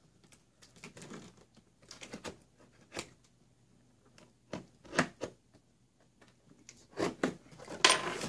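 Scattered clicks and short scraping strokes as packing tape is cut and worked loose on a cardboard box, then a denser rustle of cardboard flaps being pulled open near the end.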